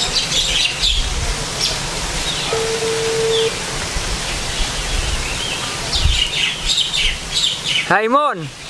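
Small birds chirping in quick, repeated short calls over a steady outdoor background hiss, with a single short steady tone of about a second partway through.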